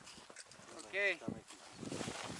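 A person's short wordless voice sound, rising and then falling in pitch, about halfway through, with scattered faint clicks around it.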